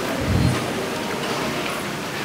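A pause in a speech over a handheld microphone: a steady hiss of background room noise, with a soft low thump about a third of a second in.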